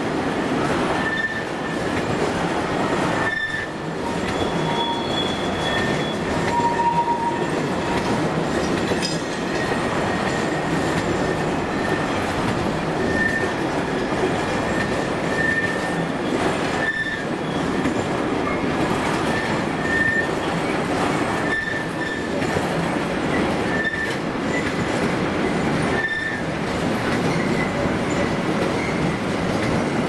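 A long freight train of mostly empty intermodal flat wagons rolling past with a steady rumble of wheels on rail. Short, high-pitched wheel squeals recur every second or two.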